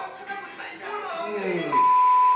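A loud, steady single-pitch test-pattern beep, the tone that goes with television colour bars, starts near the end as an edit effect. Before it, voices from the clip and a sound whose pitch falls steadily, like a slowing-down effect.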